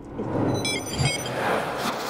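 Sound effects of a TV channel's logo ident: a rising electronic whoosh with a scatter of short high beeping tones about half a second in, a low hit about a second in, and a swell that starts to fade near the end.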